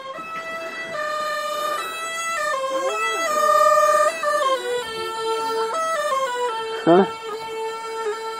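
A small traditional Qiang flute plays a slow melody of long held notes that step mostly downward, with a bright, overtone-rich tone.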